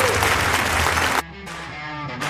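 Studio audience applauding over background guitar music; the applause cuts off abruptly just over a second in, leaving only the music.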